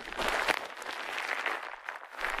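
Plastic bubble wrap being crumpled and squeezed by hand close to the microphone: a dense crinkling crackle that thins out near the end.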